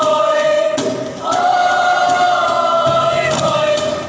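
School chorale singing together, holding one long chord through the middle, with a thump about a second in.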